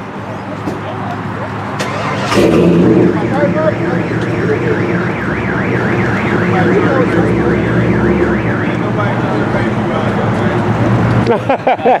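A car alarm sounding, a rapidly warbling tone that starts about two seconds in and runs until near the end, over a steady low hum.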